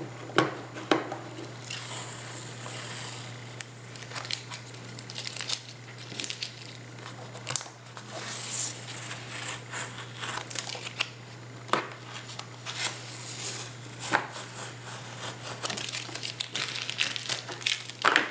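Blue painter's tape being peeled off a paper journal page in several separate pulls, crackling and crinkling as it comes away, over a steady low hum.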